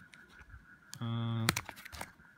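Light clicks and crinkles of a clear plastic ziplock bag being pressed and handled by fingers, with a few sharper clicks in the second half. About halfway through, a short hummed vocal sound at a steady pitch.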